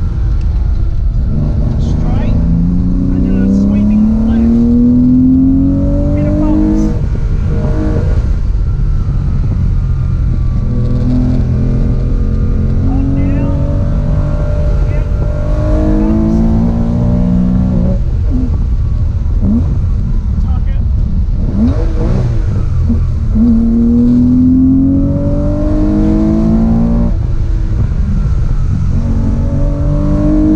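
A classic Porsche 911's engine, heard from inside the cabin, accelerating hard on a rally stage. The pitch climbs steadily, then falls back at each gear change, several times over.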